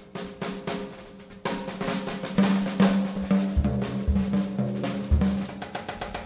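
Jazz big band drum kit playing a busy passage of rapid snare hits and rimshots. Low bass notes come in about two seconds in.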